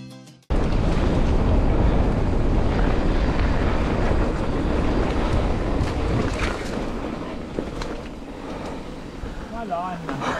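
Music cuts off about half a second in. Wind then rushes over an action camera's microphone as an e-bike rolls along a dirt and gravel trail, with tyre noise and a few sharp rattles.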